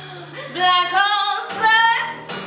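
Live female voice singing a few held, bending notes, entering about half a second in over a fading acoustic guitar chord.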